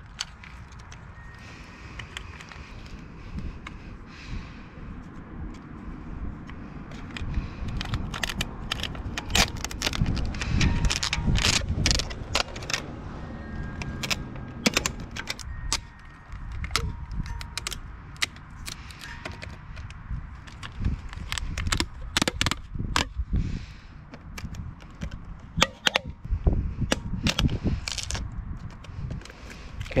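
Clear tape being pulled off a handheld dispenser roll and wrapped around a trailer tongue over a side marker light: a run of sharp crackling rips that come thick and fast through most of the second half, over a low rumble.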